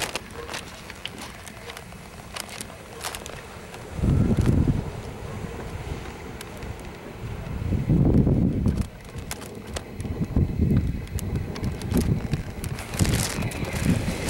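Wind buffeting the microphone in low, rumbling gusts, strongest about four seconds and eight seconds in, with scattered small clicks.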